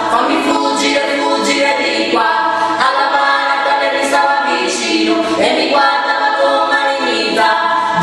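An a cappella vocal trio of two women and a man singing together in harmony, with no instruments.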